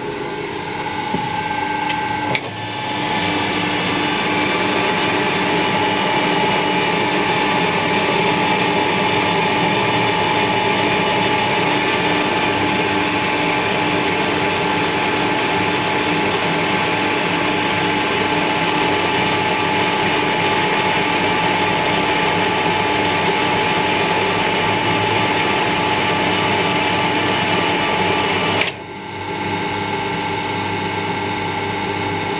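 Metal lathe running under power on a thread-cutting pass, its geared drive and leadscrew giving a steady whine. It comes up to full speed about two seconds in and drops away abruptly just before the end as the pass is stopped.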